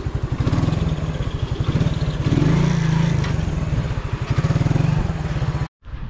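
Motorcycle engine running at low speed close to the microphone, with a quick, even beat of firing pulses. It swells a little partway through and cuts off suddenly near the end.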